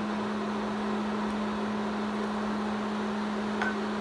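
Steady whir of an induction cooktop's cooling fan with a constant low hum, still running just after the heat has been switched off.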